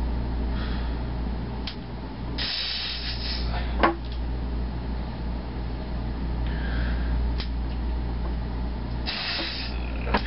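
A man breathing hard and hissing out forceful breaths through his teeth while straining to hold a 100-pound thick-grip barbell one-handed, three hissing exhalations in all, over a steady low hum. A single sharp click comes about four seconds in.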